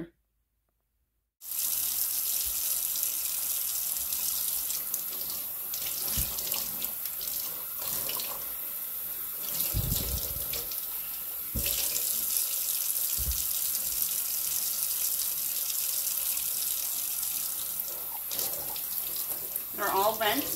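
Kitchen faucet running steadily into a stainless steel sink as green bell peppers are rinsed under the stream, starting after a brief silence. A few dull thumps come through the running water.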